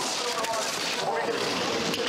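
Audio from a televised slalom race: a steady rushing noise with faint voices underneath.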